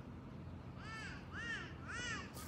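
A bird calling three times in quick succession, about half a second apart, each call a short note that rises and falls in pitch.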